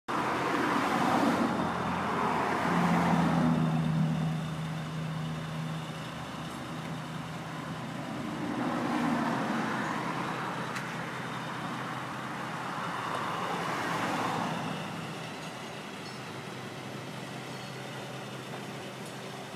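Road traffic at night: vehicles passing, each a swell of tyre and engine noise that rises and fades, about four times. A low, steady engine drone joins for a few seconds near the start.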